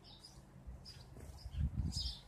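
Faint bird chirps in the background, with a few low, muffled thumps near the end as the camera is moved.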